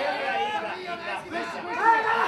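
Ringside shouting: several voices calling out over one another at a kickboxing fight.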